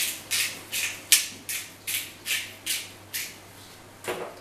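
Black pepper being dispensed over the food in a run of short, evenly spaced strokes, about nine of them at two to three a second, stopping about three seconds in.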